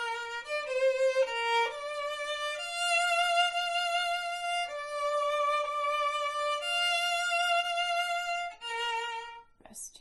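Solo violin playing a slow line of long, sustained bowed notes from a string quartet's second violin part, with the pitch changing every second or two. The playing stops about half a second before the end, followed by a brief click.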